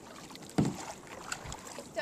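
Kayak paddle strokes in sea water, with one louder stroke about half a second in and a few faint knocks.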